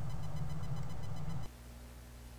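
Steady low background hum of the recording with no speech, which drops off suddenly about one and a half seconds in to a fainter, steadier electrical hum.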